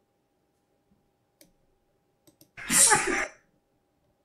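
A man sneezing once, loudly and close to the microphone, a little past halfway through. A few faint clicks, typical of a computer mouse, come before it.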